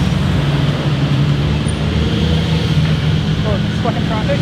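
Road traffic at an intersection: a car engine's steady low drone that holds one pitch, over the noise of passing vehicles.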